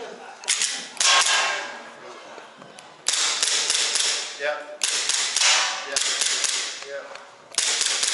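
APS Shark gas gel-blaster pistol firing about five single shots at uneven intervals, each a sharp crack trailed by a fading hiss. The pistol is malfunctioning: the shooter finds nothing working.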